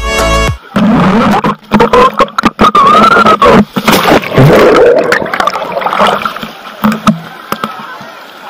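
Background music cuts off half a second in. Then an action camera in a waterproof housing plunges into a pool: loud, churning splashing and bubbling with many sharp knocks of water against the housing, a wavering pitched sound rising and falling among them, easing off in the last few seconds as the camera surfaces.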